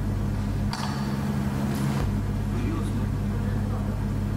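Steady electrical mains hum through the sound system, a low buzz that is about as loud as the lecture speech. About three-quarters of a second in there is a faint rustle, and the deepest part of the hum drops out for about a second before returning.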